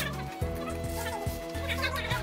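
White polystyrene foam packing squeaking in short, chirpy bursts as it is worked against the cardboard carton and plastic wrap while a speaker is pulled out; the clearest squeaks come near the end.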